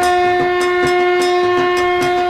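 Intro music: one long held horn-like note over a steady, quick drum beat.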